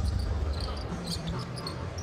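A basketball being dribbled on a hardwood court, under a steady murmur of arena crowd noise.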